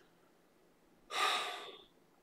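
Near silence, then about a second in a man's sharp in-breath, lasting under a second and fading out.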